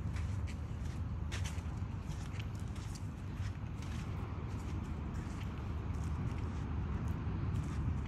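Footsteps on sand: faint, scattered soft clicks and scuffs over a steady low outdoor rumble.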